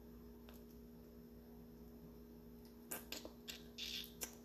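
Near silence with a steady faint electrical hum, then a few faint small clicks in the last second as a metal locket and wrap bracelet are handled and fitted together.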